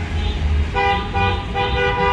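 Car horn honking in a series of short, steady blasts, about two a second, starting about a second in, over the low rumble of vehicles moving slowly past.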